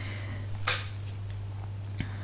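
A pause in a voiceover: a steady low hum with faint background hiss, broken by one short click about 0.7 s in.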